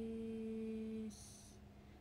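A woman's voice humming one steady, flat note that stops about a second in, followed by a brief soft hiss of breath.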